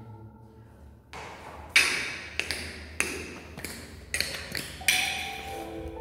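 Hard-soled shoes stepping on a tiled floor: a series of sharp clicks, about one every half second or so, starting about a second in.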